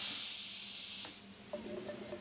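Steam hissing from a hat-steaming machine, cutting off about a second in. Background music comes in just after.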